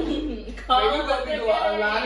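A woman's voice, loud and without clear words, rising and falling in pitch.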